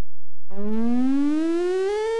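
Electronic end-of-transmission tone (roger beep) received over a Galaxy CB radio and heard through its speaker: a brief steady low tone, then a tone sliding steadily upward in pitch, marking the other station unkeying.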